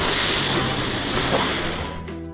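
Loud, steady hiss of air rushing into a balloon as it is inflated, stopping near the end.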